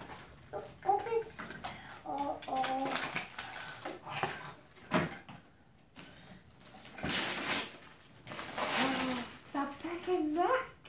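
A toddler's short, wordless voice sounds, with rustling of wrapping paper twice in the second half.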